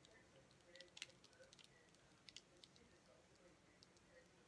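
Near silence: room tone with a few faint, scattered ticks and taps, grouped about a second in and again a little after two seconds.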